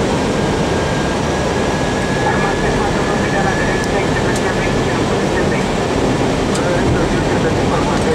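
Steady rush of airflow and engine noise on the flight deck of an Airbus A320-family airliner on approach, with a faint thin tone in the first half and a few light clicks.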